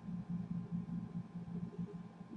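Quiet room tone: a faint, low, wavering hum with no distinct event.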